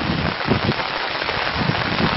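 Garden hoes chopping and scraping into loose red soil in irregular strokes, over a steady hiss.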